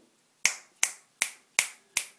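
Fingers snapping five times in an even rhythm, a little under half a second between snaps.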